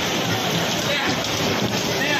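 Loud, steady din of a bumper-car ride in motion: the cars running and rumbling across the floor, with faint voices mixed in.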